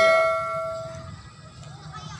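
A bright bell ding, a subscribe-animation notification sound effect, ringing out and fading away over about the first second.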